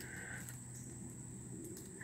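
Quiet woodland background: a faint, steady high-pitched tone over soft hiss, with a brief faint mid-pitched tone in the first half-second.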